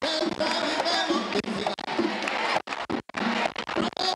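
Merengue singers singing a cappella over a crowd in a large, echoing mall atrium. The sound cuts out briefly a couple of times near the three-second mark.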